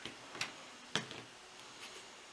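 A handful of light clicks and taps of things being handled on a tabletop, the sharpest about a second in.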